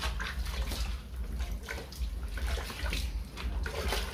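Water sloshing and splashing in a plastic bucket as a hand dips and swishes a sheet of 400-grit wet-and-dry sandpaper, wetting it for wet sanding.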